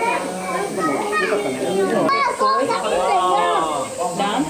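Children's voices chattering and calling out over one another, mixed with other visitors talking.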